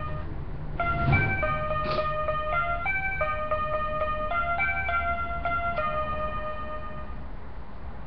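Mini electronic keyboard playing a slow, simple melody of held notes, one after another, stopping about seven seconds in.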